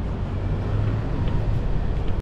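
Outdoor street ambience: a steady low rumble of traffic and air noise, with no clear single event.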